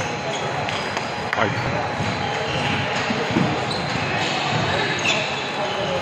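Table tennis ball clicking off paddles and bouncing on the table during a rally, over steady background chatter.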